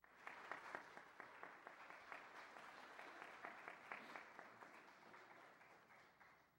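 Congregation applauding, many hands clapping. It starts all at once and tapers off near the end.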